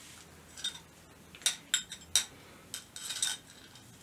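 A few light clinks and taps from a drinking glass of coffee being handled, spaced irregularly, with a short cluster of them near the end.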